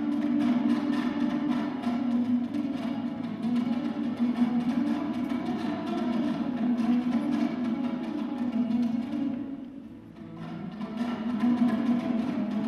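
Solo dombra, the Kazakh two-stringed lute, strummed fast in a küi, with a brief quieter passage about ten seconds in before it picks up again.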